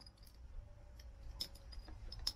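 A few faint clicks and light rattling of plastic wiring connectors being handled and plugged together under a dashboard.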